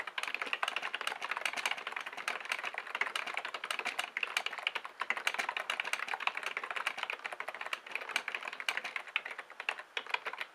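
Fast, continuous typing on a computer keyboard: a dense, unbroken run of key clicks, many per second.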